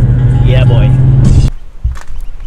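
Steady low drone of a car's engine and road noise heard inside the cabin while driving, with a short spoken word over it. It cuts off abruptly about one and a half seconds in.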